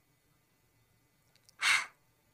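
A voice saying the phonics sound /h/ as a single breathy puff of air, like panting when out of breath, once about three-quarters of the way in.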